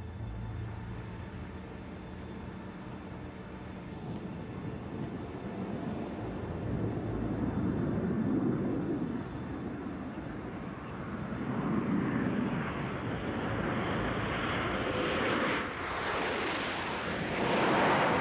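Space Shuttle orbiter Discovery gliding in unpowered on final approach, no engine running: a rush of air over the airframe that grows louder in waves and swells to its loudest near the end as the orbiter closes in.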